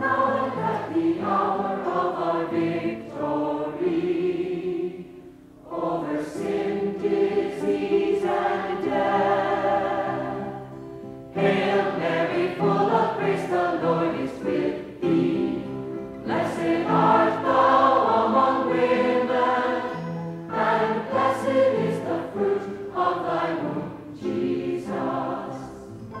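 A congregation of men and women singing together, phrase by phrase, with short breaks between lines, the clearest about five seconds in.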